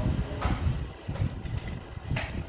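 Low, irregular rumbling thumps of handling noise from a handheld phone microphone being carried while walking.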